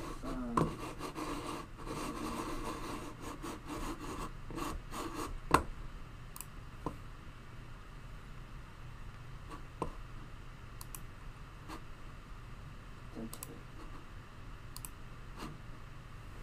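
Small scratching and rubbing handling noises with scattered sharp clicks, the loudest click about five and a half seconds in, over a faint steady background hum.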